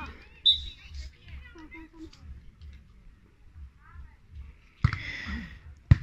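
Faint, distant voices of players and onlookers around an outdoor sand volleyball court, with a few short chirps. A single sharp slap comes near the end, followed by a brief hiss.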